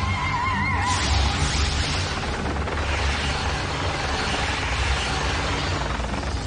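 Sci-fi cartoon sound effects: a wavering, neigh-like creature screech in the first second, then a dense rushing noise over a deep low rumble, with dramatic score underneath.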